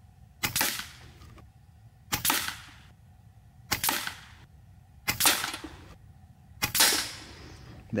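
FX Impact M4 PCP air rifle in .22 calibre firing five shots about a second and a half apart, each a sharp report with a short ringing tail. The rifle is tuned to push the pellets at about 896 feet per second.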